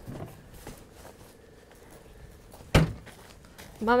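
A single loud thump of a car door shutting, about three-quarters of the way through, over faint open-air background.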